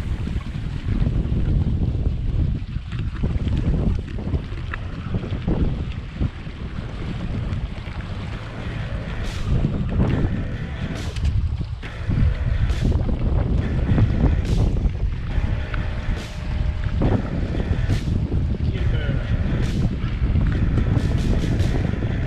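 Wind buffeting the microphone and water rushing along the hulls of an F27 trimaran under sail. From about nine seconds in, water splashes against the hull roughly once a second.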